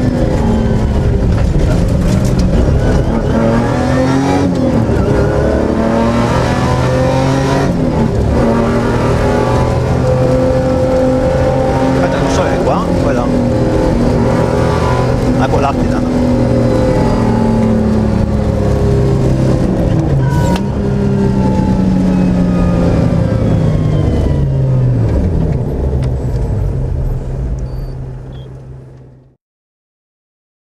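Suzuki Grand Vitara cross-country rally car's engine heard from inside the cabin, loud and rising and falling in pitch as the car accelerates and lifts off between corners, over road noise. The sound fades out over the last few seconds.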